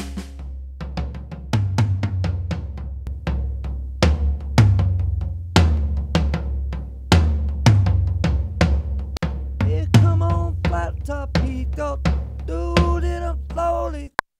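Sampled drum kit played from a keyboard at 151 bpm: kick, snare and cymbal hits over a low bass pulse, laying down a drum part. A pitched part joins in about ten seconds in.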